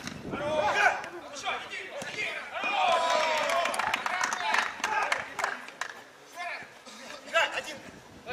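Footballers shouting and calling to each other during play, with several short thuds of the ball being kicked.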